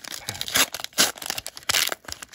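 Foil wrapper of a Pokémon trading-card booster pack being torn open by hand, crinkling and ripping in several short bursts, the loudest about a second in.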